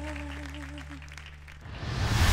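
A woman's final held sung note with vibrato, ending about a second in, over the backing track's sustained low chord, with audience applause beginning. Near the end a rising whoosh swells in.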